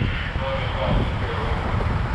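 Fire apparatus engine running steadily, a continuous low rumble.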